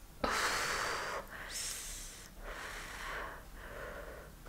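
A woman breathing out hard through pursed lips close to the microphone, about four heavy airy breaths in a row, the first the loudest.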